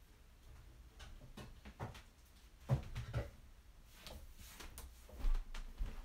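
Scattered knocks and clunks of things being handled in a small room, the loudest a cluster of low thuds about three seconds in and another low thud just after five seconds.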